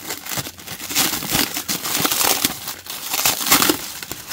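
Clear cellophane wrapping crinkling and crackling as it is handled and pulled off a small circuit board, a dense, uneven run of crackles.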